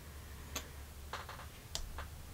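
A few faint, light clicks, spread out and irregular, as a small plastic skincare tube and its packaging are handled.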